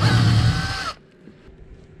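Cordless drill spinning a long bit into a wooden framing rib, a steady motor whine that stops about a second in.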